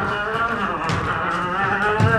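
Several voices letting out long, drawn-out wordless shouts that slide up and down in pitch, overlapping one another, with a single knock about a second in.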